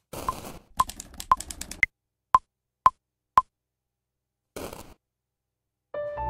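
Cubase metronome count-in before recording: sharp electronic clicks about two a second, with a higher-pitched accent click on the first beat of each bar, seven clicks in all. A short burst of noise follows about a second and a half after the last click.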